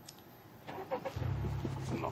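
A car engine starting about a second in, after a few short clicks, and settling into a steady low idle.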